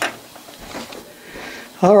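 A single sharp click, then faint room tone; a man's voice begins near the end.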